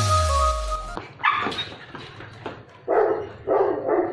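Background music that cuts off with a falling pitch drop about a second in, then a beagle barking three times.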